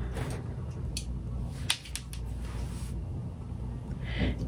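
A few light clicks and taps from handling a makeup brush and eyeshadow palette, spread over a couple of seconds, over a steady low hum.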